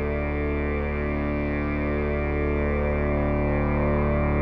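Electronic accompaniment holding a steady, distorted, guitar-like drone chord that swells slightly louder, with no distinct drum strokes.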